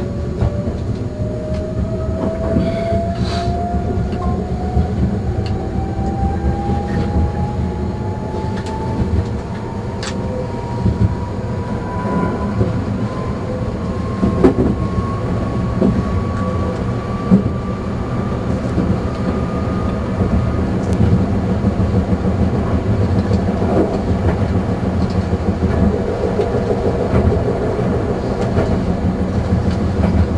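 Meitetsu Panorama Car electric train running on the rails, its motor whine climbing steadily in pitch for about twenty seconds as it gathers speed, then fading. Under it runs a steady rumble of wheels on track, with a few sharp clicks from the rail joints.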